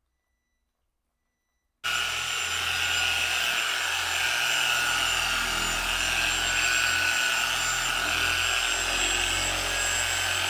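Harbor Freight electric car polisher with a six-inch finishing pad, running steadily as it buffs wax on a car's paint: a constant whine with several steady high tones. It starts abruptly about two seconds in.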